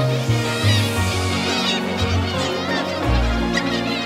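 Background music: low bass notes changing every second or so under held chords.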